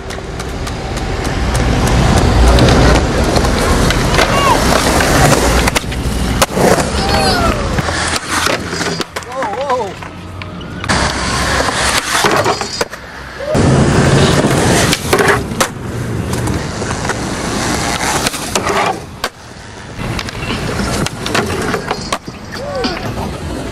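Skateboard wheels rolling over concrete, with sharp clacks as the board is popped and lands. Voices shout briefly in between.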